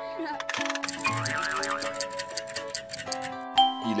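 Cartoon sound effect over steady children's background music: a fast run of ticking clicks, about ten a second, lasting around two seconds, with a short wobbling tone partway through.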